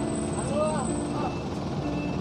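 Steady drone of a vehicle engine running nearby in street traffic, with faint voices under it.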